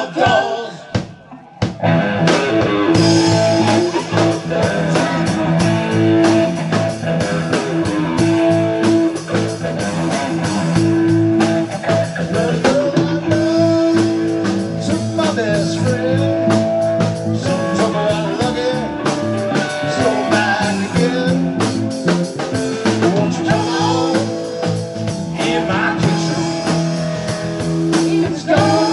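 Live blues-rock band playing: electric guitar, bass guitar and drums. After a brief lull the band comes in at full volume about two seconds in, with held, bending guitar notes over a steady groove.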